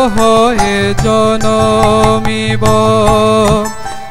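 Male voice singing a devotional song in long held notes that slide from one pitch to the next, accompanied by a harmonium.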